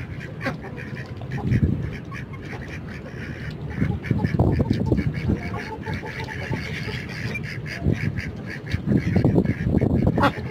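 Ducks and chickens feeding together: fast clicking of bills pecking and dabbling in the food, with low duck quacking in bursts, loudest about four seconds in and again near the end.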